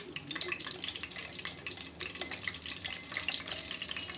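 Cumin and ajwain seeds sizzling in hot oil in a steel kadhai: a steady faint hiss with a few small clicks.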